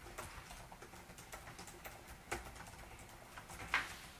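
Scattered light clicks and taps at irregular intervals, with a sharper click near the end.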